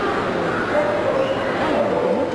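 A small dog whining over people's chatter, with one drawn-out note starting just under a second in.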